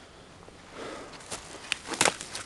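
Footsteps through dry grass and brush, with a soft rustle and a few sharp clicks of twigs near the end.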